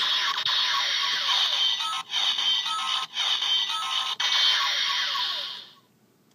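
Electronic gun-firing sound effect from the DX Fourze Driver toy belt and its NS Magphone shoulder-gun controllers, set off by pulling the triggers. It plays as a string of long blasts, breaking briefly about two, three and four seconds in, and stops shortly before the end.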